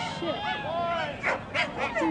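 A dog whining and yipping excitedly in quick, rising-and-falling squeals, over and over, with a couple of short sharp yelps.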